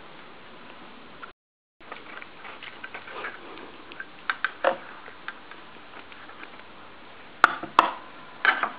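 A metal spoon clinking and scraping against an open tin of cat food and a stainless steel bowl, with scattered small clicks and two sharp clinks near the end. The sound drops out briefly about a second and a half in.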